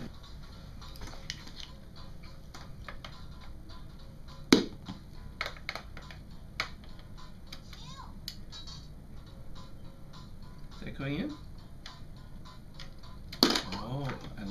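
Scattered small clicks and taps of plastic toy coins against a plastic toy piggy bank, with one sharp knock about four and a half seconds in.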